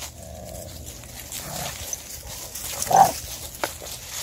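Dogs vocalising as they play over a soccer ball: low growling, then one short, loud bark about three seconds in.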